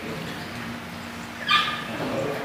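A dog gives one short, high-pitched yelp about one and a half seconds in.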